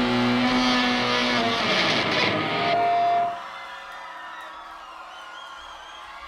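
Distorted electric guitars and amplifiers ringing out and feeding back as the final chord of a rock song dies away. The sound is cut off abruptly about three seconds in, leaving faint crowd noise with thin whistles.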